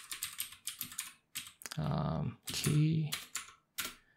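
Quick keystrokes on a computer keyboard as a terminal command is typed: a dense run in the first second and a few more near the end. Short stretches of a man's voice fall in between.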